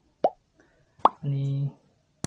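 Two short pitched pops, then a man's voice held briefly on one steady note.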